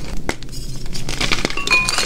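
Blocks of gym chalk being squeezed and crushed in the hands, giving a dense run of crisp crunching and crackling as they crumble.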